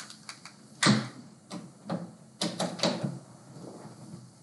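Irregular clicks and taps on a laptop's keys and mouse, about eight in all, the loudest a knock about a second in.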